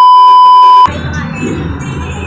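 Loud, steady, high-pitched test-tone beep of a TV colour-bars screen, cutting off abruptly after about a second. It gives way to steady restaurant background noise.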